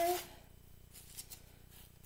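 Faint handling sounds of hands braiding soft strips of biscuit dough on a ceramic plate, with a couple of light taps a little over a second in.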